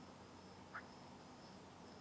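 Near silence: room tone, with one faint, short, high sound about three-quarters of a second in.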